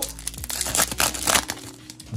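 Foil booster-pack wrapper being torn open by hand: a crackly crinkling and tearing that lasts about a second and a half.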